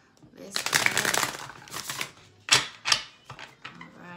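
A deck of oracle cards shuffled by hand: a dense riffling rush for about a second and a half, then a few separate sharp snaps of the cards.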